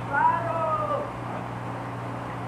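A single high-pitched cry, under a second long, that wavers and falls in pitch at its end, over a steady low hum.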